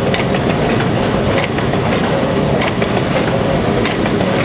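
Automatic water-pouch filling and sealing machine running with a steady mechanical hum and a sharp click about every second and a quarter as it seals and cuts each pouch.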